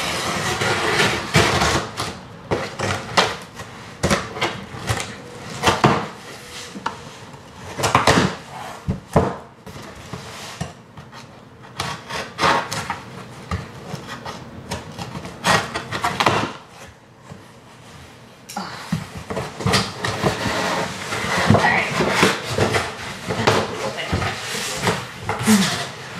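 Scissors cutting along the packing tape of a large cardboard box, then the cardboard flaps pulled open and the boxes inside handled: a long string of knocks, scrapes and rustling.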